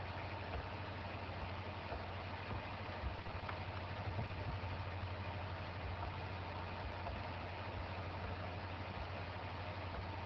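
A steady low hum under a constant hiss, with a few faint clicks: the background noise of the recording.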